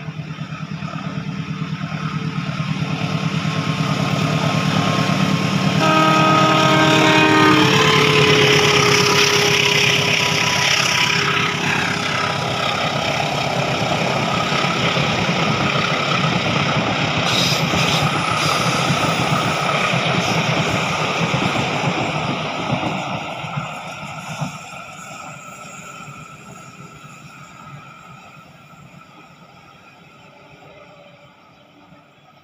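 Box-nose diesel-electric locomotive running under load as it approaches, blowing a multi-tone horn for about a second and a half, with the pitch dropping as it passes. Its string of passenger coaches then rumbles past on the rails, fading steadily as the train draws away.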